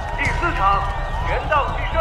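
A voice announcing the result of a contest round ("round four: boxing team wins") over a crowd of students cheering.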